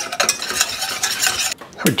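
Wire whisk beating an egg into a dry flour mixture in a stainless steel saucepan, the wires scraping round the metal pan. The whisking stops about a second and a half in.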